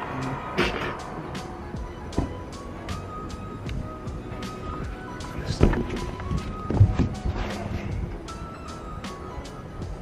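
Background music with a melody of steady notes, and a few sharp knocks, the loudest about five and a half and seven seconds in.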